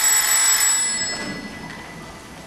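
A telephone bell rings once, bright and ringing, and fades away over about a second and a half.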